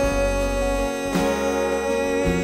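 Live band music: a male voice holds long sung notes over acoustic guitar and bass, changing note about halfway through.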